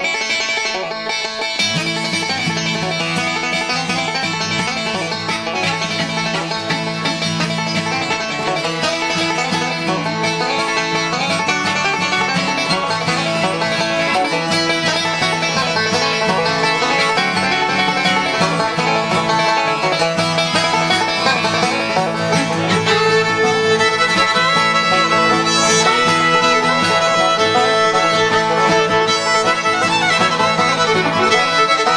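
Resonator banjo picked in a fast, continuous bluegrass style, with a fiddle heard alongside it.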